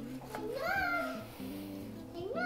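A cat meowing once, a single call that rises and then falls in pitch, heard faintly over a steady low hum.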